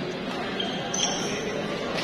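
Badminton doubles rally on an indoor court: short high squeaks of players' shoes and footfalls on the court floor about halfway through, over steady crowd chatter.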